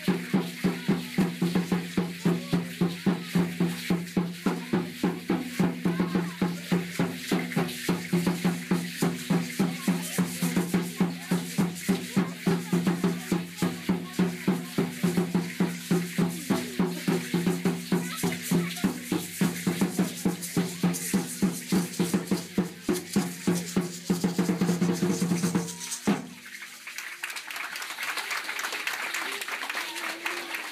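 Aztec dance drum beaten in a fast, steady rhythm of about three strokes a second, with the dancers' ankle seed-pod rattles shaking in time. The drumming stops abruptly about 26 seconds in, giving way to crowd noise and clapping.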